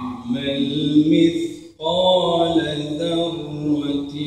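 A man reciting the Quran in a melodic chant, drawing out long wavering notes, with a short break for breath a little before halfway.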